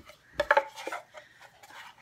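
Small wooden signs knocking and clattering together as they are handled and turned over: a couple of sharp knocks about half a second in, then lighter scraping and tapping.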